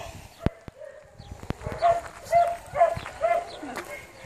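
A dog whining: a run of short, even-pitched whimpers repeated about twice a second, with a few light clicks among them.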